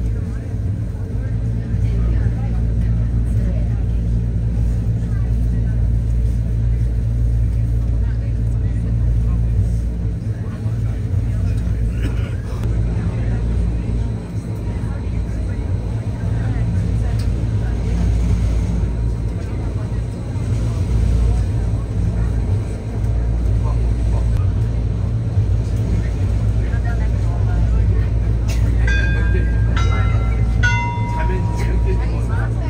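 Steady low rumble of a moving vehicle's ride noise, heard from inside the cabin. A few short, high tones sound near the end.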